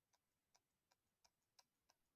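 Near silence with a run of very faint ticks, a few per second: a stylus tapping a tablet screen as short hatch strokes are drawn.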